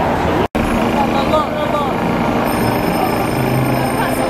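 Busy city-street ambience: traffic and passers-by talking, with a brief gap about half a second in where the footage is cut.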